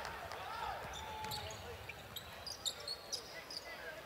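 A basketball being dribbled on a hardwood court during play, with faint voices in the arena. There are a few short high squeaks in the second half.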